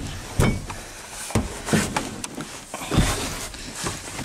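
Someone crawling through the cramped back seat of a 1997 Ford Mustang: clothing scuffing against the upholstery and trim, with a series of irregular dull knocks and bumps, the loudest about three seconds in.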